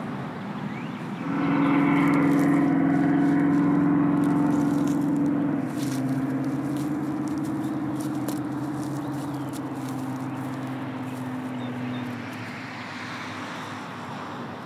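A motor vehicle's engine running close by: a steady drone that comes up about a second in and fades out near the end.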